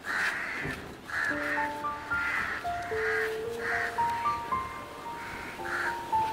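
A bird calling over and over, one call about every half to two-thirds of a second. Soft background music of slow held notes comes in about a second in.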